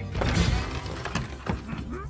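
Swinging wooden saloon doors shoved open with a loud creaking rattle, followed by two sharp knocks a little past halfway.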